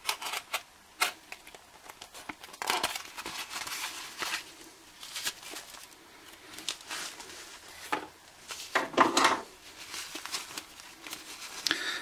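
A tape-wrapped cardboard parcel being slit open with a utility knife and pulled apart: scattered cuts, tearing and the crinkle of paper and plastic wrapping, in irregular bursts. The longest burst comes about nine seconds in.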